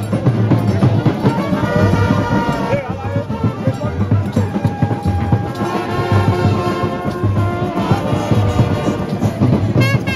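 A supporters' band in the stands playing trumpets and other brass over a steady pounding drum beat, with crowd voices mixed in.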